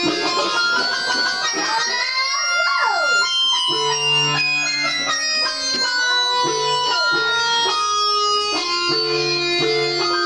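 Electronic home keyboard played on a plucked, guitar-like preset voice: a run of single notes and short phrases, with swooping pitch slides about two to three seconds in and repeated low notes after that.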